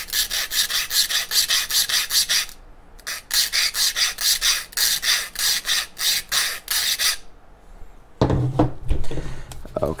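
Hand file rasping in quick back-and-forth strokes, about five a second, in two runs with a short pause about two and a half seconds in. The filing is trimming the rocket kit's split fins to fit their slots. Near the end come lower rubbing and knocking handling sounds.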